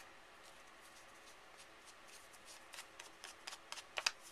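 Faint rustling of a small paper piece being handled, with scattered light ticks mostly in the second half.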